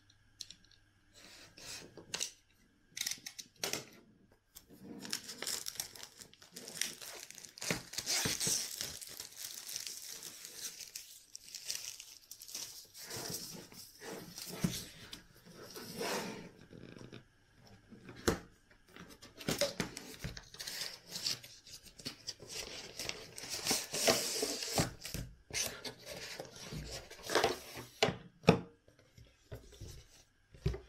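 Packaging on a cardboard gimbal box being cut with a utility knife and torn away, with tearing and crinkling noise in two longer stretches. Scattered clicks and knocks come from the cardboard box being handled and its sleeve slid off.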